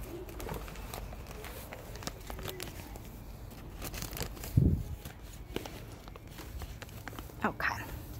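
A plastic zip-top bag crinkling and rustling as it is pulled down over a cutting in a plastic cup, with one dull thump about halfway through.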